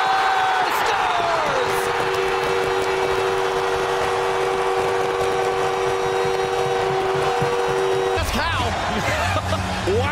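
Arena crowd cheering a home-team goal, with the goal horn sounding a long, steady two-note blast that starts about a second and a half in and cuts off suddenly about eight seconds in.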